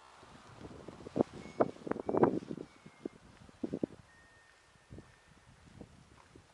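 Wind buffeting the microphone in a burst of uneven thumps about one to three seconds in, with a few more near four seconds, over low rustling.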